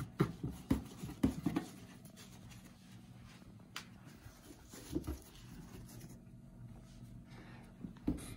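Styrofoam packing pieces being handled and lifted out of a cardboard shipping box: a quick run of light knocks and scuffs in the first couple of seconds, then a few scattered taps and soft rubbing.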